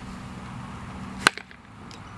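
A baseball bat hitting a ball off a batting tee: one sharp impact a little over a second in.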